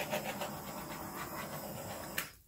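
Handheld torch flame hissing steadily as it is swept over wet acrylic paint to pop air bubbles in the surface.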